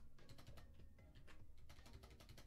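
Faint typing on a computer keyboard, a quick, irregular run of keystrokes.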